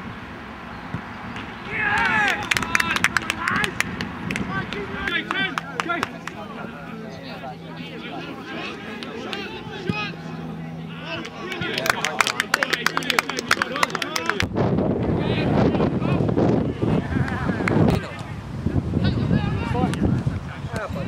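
Touchline sound of amateur football matches: players and spectators shouting and calling out, with sharp clicks and knocks among the voices. The sound changes abruptly about fourteen seconds in, where one match's audio cuts to another's.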